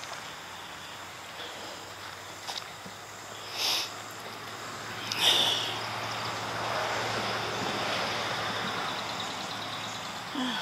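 Outdoor background noise with road traffic: a vehicle's sound swells from about halfway through and stays up over a steady low hum. Before it come two brief rustling bursts.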